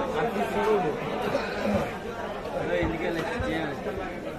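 Background chatter of several people's voices talking at once, with a few faint dull knocks.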